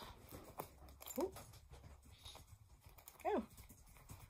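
Two short voiced exclamations, "ooh" and "oh", over faint rustling and small clicks of a wool anorak's zip and neck fastening being worked by hand.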